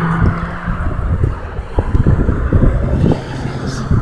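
Low, steady vehicle rumble with an engine hum that fades out under a second in, and a few light knocks.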